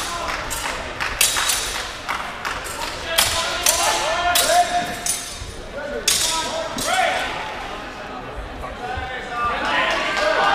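Steel training longswords clashing in a fencing exchange: a string of sharp, ringing strikes, with dull thuds of footwork on the mat.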